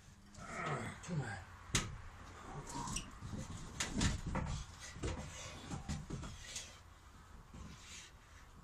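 Irregular knocks and scrapes of OSB roof sheathing and an aluminium ladder being handled overhead, with one sharp knock a couple of seconds in. A voice is briefly heard at the start.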